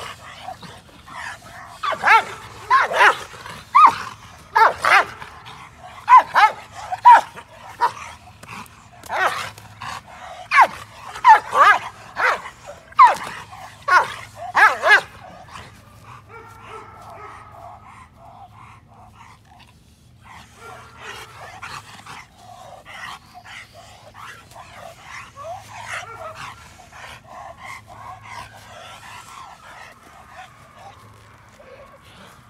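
An American Bandog barking hard on the leash at a decoy agitating her: a run of about twenty loud barks over some thirteen seconds, then quieter, softer vocalising through the second half.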